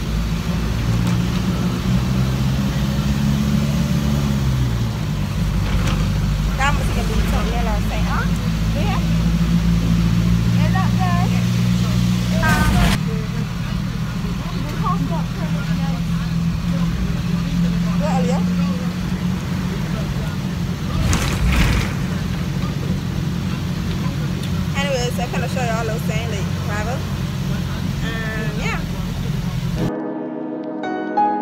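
Bus engine droning steadily, heard from inside the passenger cabin; its pitch rises and then falls away about four seconds in. Two sharp knocks come near the middle and about two-thirds through, and faint voices are heard at times.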